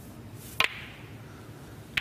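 Snooker balls clicking: a sharp double click about half a second in, as the cue strikes the cue ball and balls collide, then another single click of ball on ball near the end.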